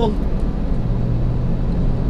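Steady low rumble with a constant low hum running under it, between spoken phrases.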